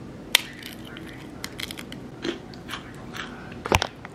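Crisp air-fried tortilla chips snapping and crunching as they are picked up and bitten: scattered sharp crackles, with the loudest crunches near the end.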